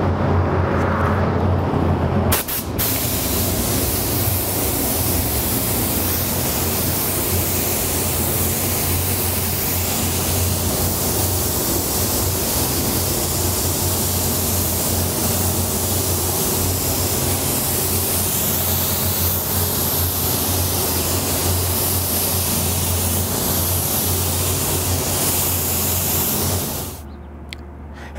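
Gravity-feed spray gun hissing steadily as it sprays 2K automotive clear coat. The hiss starts abruptly about two and a half seconds in and stops about a second before the end, over a steady low hum.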